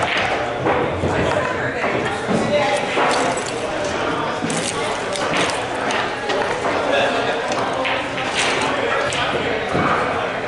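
Indistinct chatter of voices in a pool hall, with several sharp clicks of pool balls striking scattered through it.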